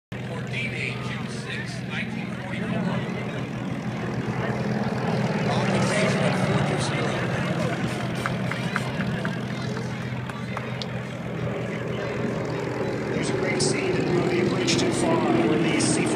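Douglas DC-3's twin radial piston engines droning as it flies low past. The drone swells about six seconds in and again near the end.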